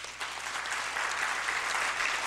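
Audience applauding steadily, many people clapping at once.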